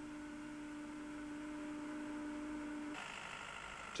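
Faint steady hum on a single pitch that stops about three seconds in, leaving a fainter hiss with a few higher tones.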